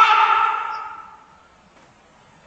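A man's drawn-out scream, "Ah!", held on one pitch and dying away over about the first second.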